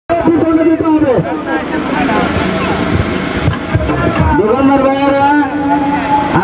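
A person's voice holding long, drawn-out notes, sliding in pitch between them.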